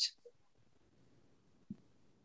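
Near silence: quiet room tone after a word ends, with one faint click near the end.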